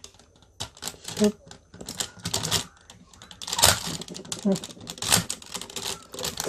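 Hard plastic parts of a DX Goseiger combining toy robot clicking and clacking in the hands as the red dragon upper body is fitted onto the leg section, in a quick irregular run of clicks.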